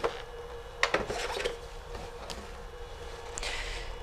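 Cardboard packaging handled and set down: soft rubbing of card with a few light knocks in the first second and a half.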